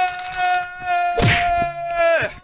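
A man holding one long, high-pitched vocal note into a microphone, steady in pitch, with a short burst of noise over it about a second in.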